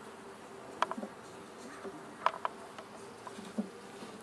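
Honeybees buzzing in a faint, steady hum from a small cluster too few to make a colony, inside a wooden bait hive. A few sharp clicks break in, about a second in and twice more a little past halfway.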